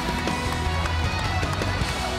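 Music playing with a steady, heavy bass and sustained tones.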